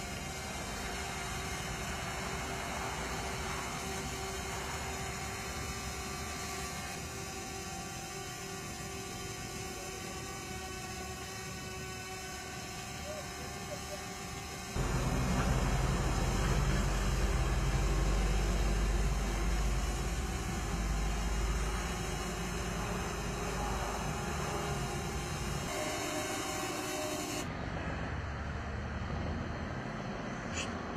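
Small quadcopter drone's propellers running with a steady multi-tone whine. About halfway through, a cut brings a louder low rumble under it.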